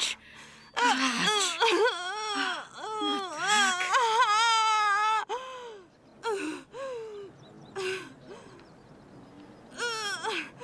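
A woman wailing in the pain of labour: long, wavering wails through the first half, then shorter falling cries that die away.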